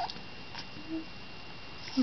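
Newborn baby making short, high squeaky vocal sounds: a brief gliding squeak at the start and a fainter one about a second in, which the holder wonders might have been a sneeze.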